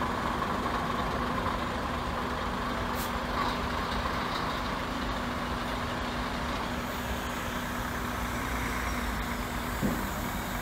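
Heavy articulated truck with a refrigerated semi-trailer driving slowly up a ferry's loading ramp, its diesel engine running steadily. A brief sharp click comes about three seconds in.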